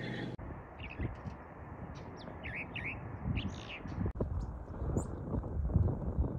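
Small birds chirping outdoors: a scattering of short, high calls over a steady background hiss.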